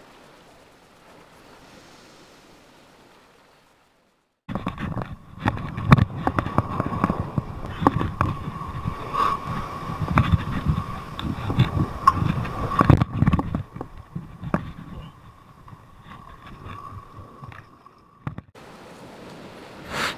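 Sea surf surging and splashing against a rock ledge close to the microphone, with many knocks and bumps and a thin steady whine over it. It is faint for the first few seconds, jumps loud about four seconds in and eases off in the last few seconds.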